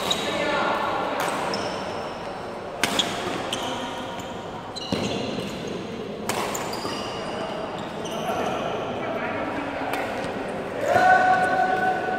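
Badminton rally: sharp racket strikes on the shuttlecock every second or two and short squeaks of shoes on the court floor, echoing in a large sports hall. Near the end there is a louder held tone, a shout or a long shoe squeak.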